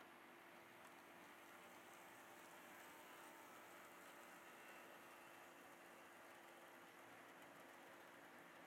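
Near silence: HO-scale model trains running on the layout, a faint steady hum over low hiss.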